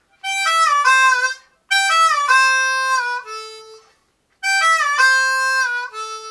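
Diatonic harmonica played solo in cross harp: three short phrases, each stepping down through draw notes with bends that slide the pitch down, and each settling on a held low note. This is a country-style fill built on draw-hole bends.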